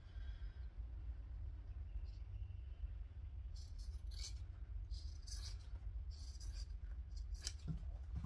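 Scissors cutting through fabric fused to interfacing: a run of short snips and rustles, mostly in the second half, over a steady low hum.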